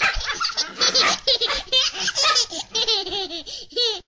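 A baby laughing in repeated bursts of giggles, which cut off suddenly at the end.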